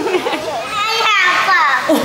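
Young children's voices without clear words: a little girl's high-pitched vocalizing and laughing, with a long squeal that rises and falls in pitch about a second in.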